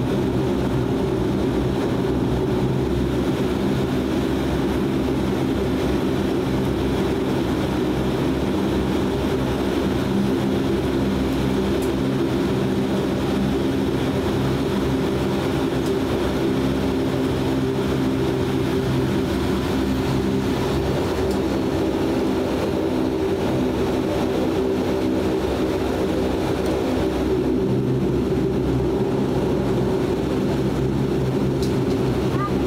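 Cabin of a DHC-8 Q400 turboprop taxiing: its Pratt & Whitney PW150A engines and six-bladed propellers give a steady drone made of several low, steady tones.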